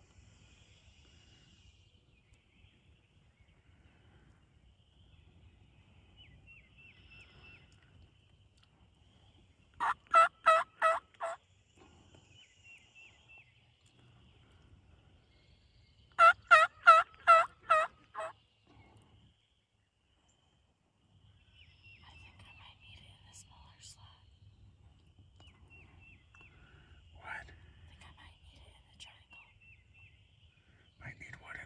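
Two runs of loud turkey yelps, about four notes a second: six notes about ten seconds in, then seven or eight more about six seconds later, the last notes of each run trailing off.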